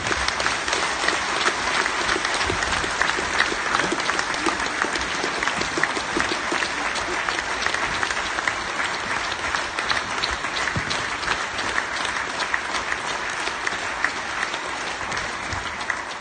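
Audience applauding steadily, easing off a little near the end.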